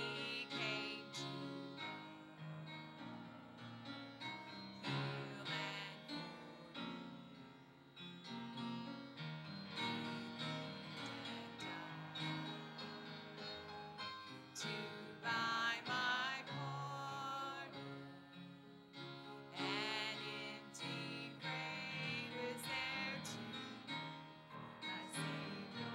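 A congregational hymn sung with piano accompaniment, a woman's voice leading, with a held, wavering note about two-thirds of the way through.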